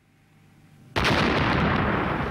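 An aircraft tyre overinflated with gas bursts in an explosion. After a faint rising hiss, a sudden loud blast comes about a second in, and the noise of the blast carries on without dying away.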